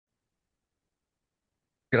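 Digital silence, with a man's voice starting to speak just at the very end.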